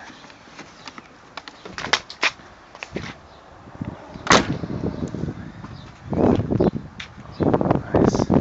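Several sharp clicks and knocks, the loudest about four seconds in, followed by a stretch of rustling near the end.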